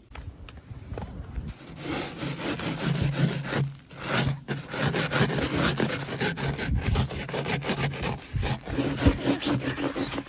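Hand brushing and wiping snow off the face of a trail map sign close to the microphone: dense, repeated rubbing and scraping strokes, starting about two seconds in, with a short break around four seconds.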